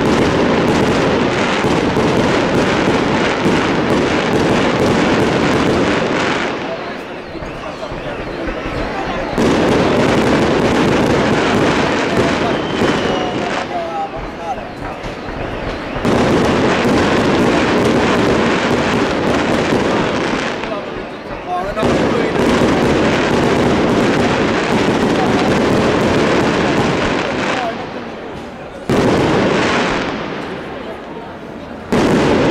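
Moschetteria fireworks barrage: a dense, rapid-fire string of bangs and crackles. It comes in long waves of several seconds, each easing off briefly before the next one starts.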